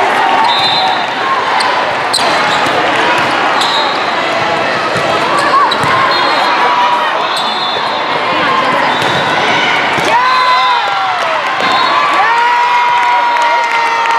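Indoor volleyball rally in a large echoing hall: the ball being struck several times, sneakers squeaking on the court floor, and players' and spectators' voices. From about 10 s in come drawn-out shouts and calls as the point ends.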